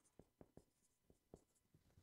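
Faint marker strokes on a whiteboard: a scattering of short, light squeaks and ticks as a word is written out by hand.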